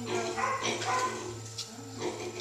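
A few short, high-pitched animal whines that bend in pitch, bunched in the first half, over a steady low hum from the underwater treadmill's machinery.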